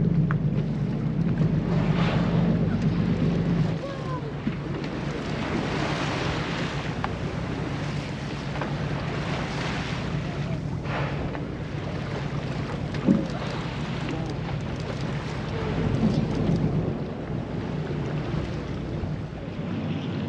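Boat engine running with a steady low drone that eases off about four seconds in, over steady wind on the microphone and water washing against the hull. There is a single brief knock about two-thirds of the way through.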